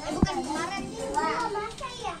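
Young children's voices chattering, with one short low thump about a quarter of a second in.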